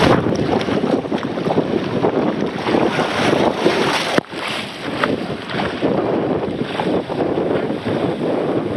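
Rushing water and a rider sliding fast down an open water-slide chute, with wind buffeting the microphone; the noise drops out briefly a little past halfway, then resumes.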